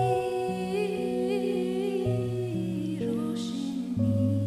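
A woman's singing voice holds a long wordless note with vibrato, close on a handheld microphone, over sustained accompaniment chords that change every second or so, with a deeper bass note coming in about halfway. A short breath comes near the end.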